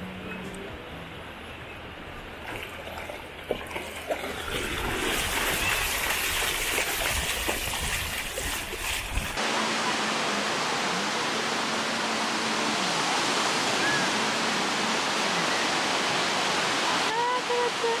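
Shallow seawater sloshing and splashing around a wading dog, then, from about nine seconds in, a steady wash of small waves breaking on a sandy beach.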